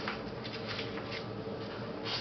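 A steady low hum with soft, irregular rustling and scratching over it.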